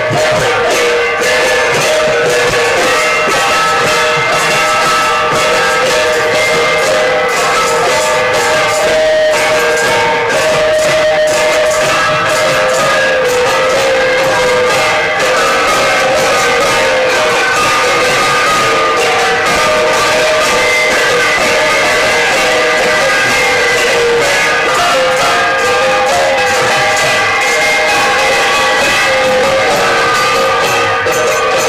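Bell-metal gongs beaten with wooden sticks together with small hand cymbals, a loud and unbroken clanging din with ringing metallic tones.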